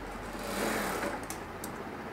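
Industrial sewing machine stitching a short run through trouser fabric, running for about half a second before stopping, followed by a couple of light clicks.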